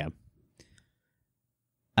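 The tail of a spoken word, then near silence in a pause of a recorded conversation, broken by one faint click about half a second in.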